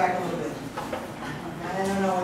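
Indistinct talking: voices speaking off-microphone, with one drawn-out vowel near the end.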